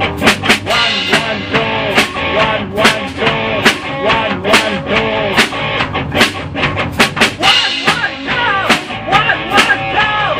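Rock band playing the song: a drum kit keeps a steady beat of hits under a repeating electric guitar riff with bending notes.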